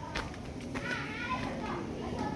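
High-pitched children's voices chattering and calling, with a sharp click shortly after the start.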